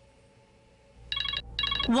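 Smartphone ringing for an incoming call: an electronic ringtone in two short trilling bursts, starting about a second in, over a low hum.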